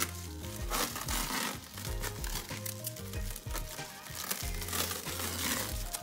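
Clear plastic stretch wrap crinkling as it is pulled taut and wound around a horse's hoof, over background music with a steady low bass.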